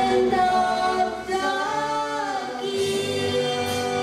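A woman and a man singing a hymn together as a duet into handheld microphones, holding long notes that glide between pitches.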